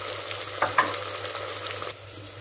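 Chopped onions and spices sizzling in hot oil in a pressure cooker, a steady hiss with fine crackles, as a spoon stirs the added turmeric through them with a couple of short scrapes in the first second.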